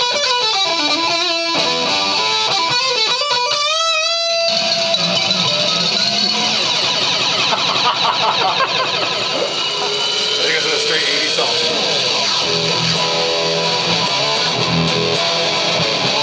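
Electric guitar played through a Kaoss Pad effects unit. For about the first four seconds its pitch slides and warbles up and down in sci-fi-style sweeps, then it turns into a dense, noisy wash of processed guitar.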